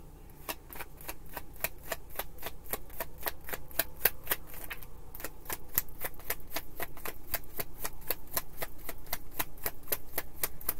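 A deck of tarot cards being shuffled by hand: a steady, even run of sharp card clicks, about five a second.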